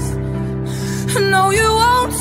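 Song with steady orchestral backing: a singer breathes in audibly between phrases, then a new sung note enters with an upward slide about a second in.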